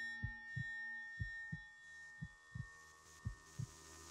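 A slow heartbeat sound effect, paired low thumps about once a second, over a faint drone of held tones.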